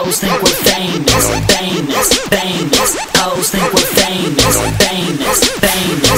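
Hip hop track playing: rapping over a regular beat with long, deep bass notes.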